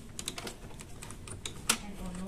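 Irregular small clicks and taps of plastic and metal parts being handled inside a disassembled Epson L3110 inkjet printer, with one sharper click near the end.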